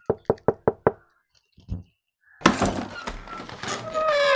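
A rapid run of about six knocks on a door. About two and a half seconds in, a loud rushing noise begins and continues.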